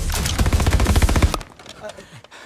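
Automatic rifle fire: a rapid, continuous burst of shots that cuts off suddenly about one and a half seconds in.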